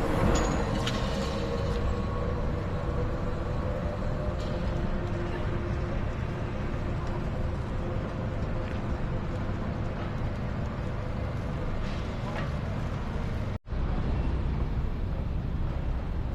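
City street traffic: a steady rumble of passing vehicles, with an engine tone fading over the first few seconds. The sound cuts out for a split second near the end.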